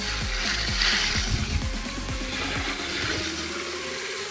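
Water poured from a plastic bucket into a barrel of dry organic matter, splashing most strongly in the first second and a half, over background music.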